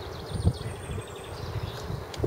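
Small birds chirping faintly and high over a low, uneven rumble, with one dull thump about half a second in.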